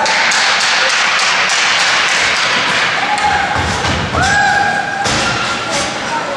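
Ice hockey rink ambience: a steady wash of background noise with frequent sharp taps and knocks, and a held tone a little after four seconds in.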